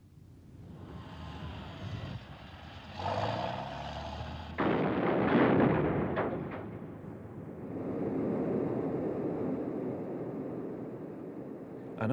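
Jet aircraft noise building up, then a loud sudden blast about four and a half seconds in that fades over a couple of seconds, followed by steady jet engine noise.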